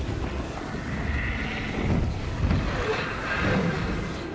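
Film sound effects of a strong wind rushing through a snowstorm, with a deep rumble underneath that carries on steadily.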